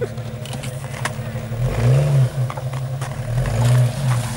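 Jeep Grand Cherokee engine working under load while crawling off-road, revving up and dropping back twice: once about two seconds in and again near the end.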